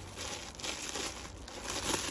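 Clear plastic garment bag crinkling as it is handled, an irregular rustle throughout.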